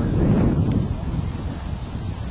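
Wind buffeting the camera's microphone: a steady low rumble.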